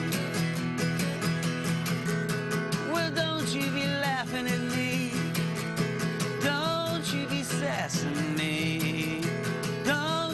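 Live solo song: an acoustic guitar strummed in a steady rhythm, with a man singing over it in phrases that come and go.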